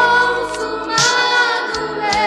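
Portuguese-language gospel song: held sung notes with vibrato, backed by choir-like voices over instrumental accompaniment, with a new phrase starting about halfway through.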